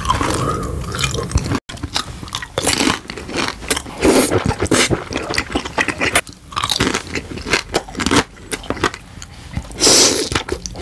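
Close-miked ASMR eating sounds: a man biting and chewing food, with crisp, crunchy bites that come in irregular bursts. The sound drops out for an instant about one and a half seconds in, at a cut between clips.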